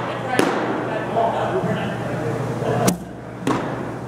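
Baseball pitches smacking into a catcher's leather mitt: one sharp knock about half a second in, then two close together around three seconds in, among faint voices.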